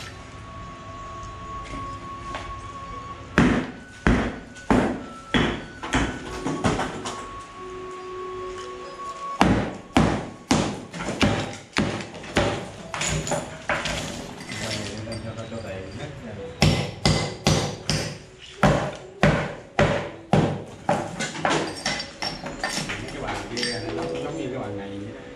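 Hammer blows on a chisel chipping old tile and mortar off a concrete ledge: irregular runs of sharp knocks, a few a second with short pauses, with loose chips clinking. Background music with held notes underneath.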